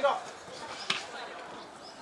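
A soccer ball struck once, a single sharp thud about a second in, over low open-air background noise.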